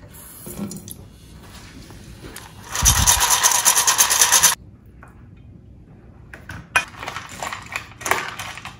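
Tap water running into a stainless steel bowl of dry kibble for about a second and a half, starting about three seconds in and cutting off suddenly. Near the end, a few light clinks and scrapes of a spoon stirring the soaked kibble in the metal bowl.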